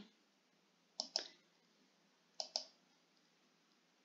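Computer mouse button clicked twice, about a second and a half apart. Each click is a quick double tick of press and release.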